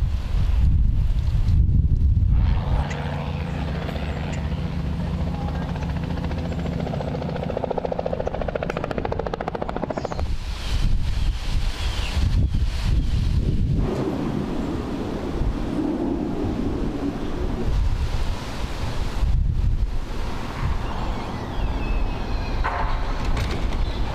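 Outdoor ambient noise with a steady low rumble, changing in character every few seconds.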